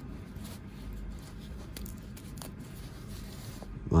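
Faint rustling and scraping of a nylon webbing strap being fed and slid through a small metal cam buckle, with a few soft ticks from the buckle.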